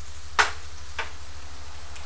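Raw shrimp sizzling in a skillet of melted buttery spread over a gas flame. One sharp metal clank comes about half a second in, from a pan lid being set down on the stove, and a lighter click about a second in.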